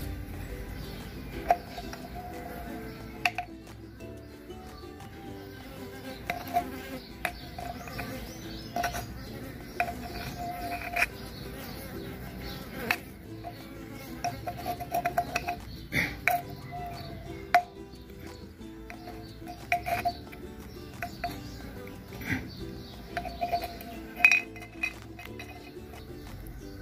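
Mandaçaia stingless bees buzzing in flight close by, the buzz coming and going in short passes, with scattered sharp clicks throughout.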